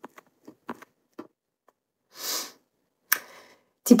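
A woman sniffing once through her nose, a short breathy burst a little past halfway, among a few faint small clicks, with one sharper click just after.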